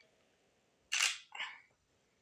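Nikon D3500 DSLR taking one shot about a second in: a sharp shutter-and-mirror click, followed a moment later by a second, softer click as the mechanism resets.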